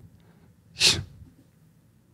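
A single short, sharp burst of breath from a person, a little under a second in.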